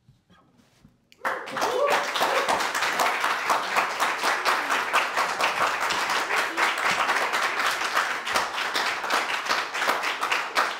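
Small audience applauding, breaking out suddenly about a second in after a moment of silence and continuing steadily, with a voice or two calling out as it starts.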